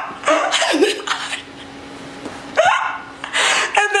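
A woman's exaggerated mock sobbing: several short vocal bursts with gaps between them, some sliding up and down in pitch.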